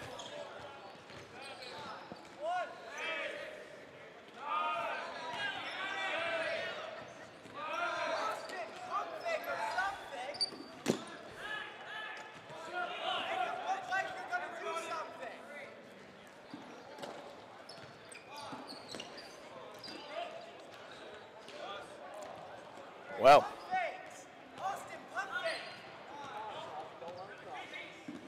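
Dodgeballs bouncing and striking on a hardwood gymnasium floor amid players' echoing voices and calls. Two sharper ball impacts stand out, about eleven seconds in and a louder one a little after twenty-three seconds.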